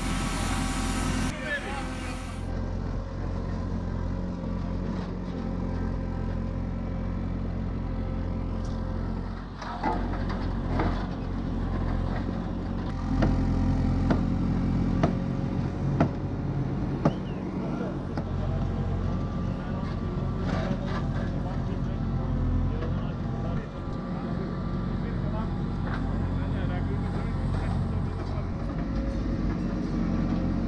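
Diesel engine of a backhoe loader running steadily, with a few sharp knocks roughly halfway through.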